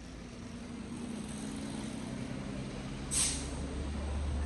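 A heavy vehicle's engine running in street traffic, its low rumble growing slowly louder, with a short sharp hiss about three seconds in.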